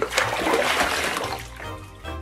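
Water splashing and running off as a foam-covered doll is lifted out of a small toy bathtub: a sudden splash that fades out over about a second and a half.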